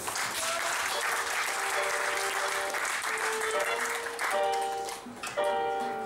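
Audience applauding for about four seconds, the clapping fading as a band's electric keyboard starts playing chords.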